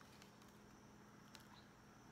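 Near silence: room tone, with one faint click a little past halfway.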